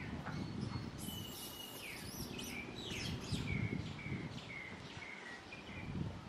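A bird calling: a string of short whistled notes, each falling slightly in pitch, about two a second, with a few higher sweeping notes just before them, over steady outdoor background noise.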